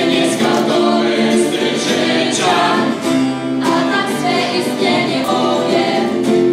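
A youth choir of girls and boys singing together, accompanied by acoustic guitars, with long held notes.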